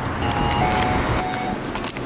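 Street traffic noise, with a brief electronic tone of two steady notes, the second a little lower, starting a fraction of a second in and ending about a second and a half in.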